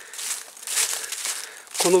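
Footsteps crunching and rustling through dry fallen leaves in irregular bursts, with a man starting to speak just before the end.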